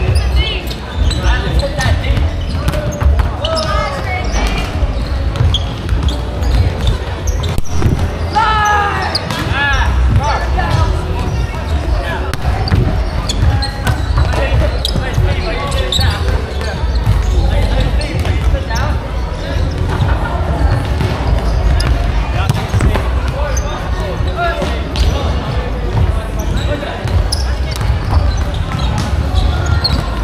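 Busy indoor sports hall during volleyball: volleyballs struck and bouncing on the wooden floor across several courts, knocking again and again, under the voices of many players, all echoing in the large hall.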